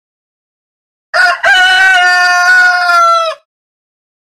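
A rooster crowing once, about a second in: a short first note, then one long held note that sags slightly in pitch before it stops.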